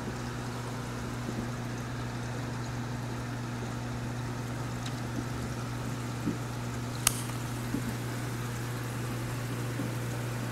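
Aquarium water trickling and bubbling with a steady low hum underneath. A single sharp click comes about seven seconds in.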